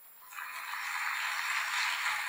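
An audience applauding in a theatre. The clapping starts about a third of a second in and holds steady.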